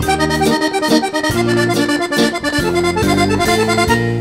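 Piano accordion playing a lively tune, with sustained chords and a steady rhythmic pulse.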